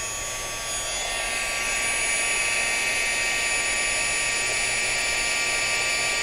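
Handheld craft heat gun running steadily: a fan rush with a fixed high-pitched whine, growing a little louder over the first couple of seconds.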